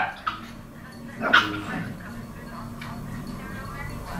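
A small dog barks once, a short sharp bark about a second and a half in, over a low steady background hum.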